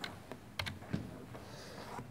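A few faint, sharp clicks of keys being pressed, about four in the first second, as the presentation slide is advanced.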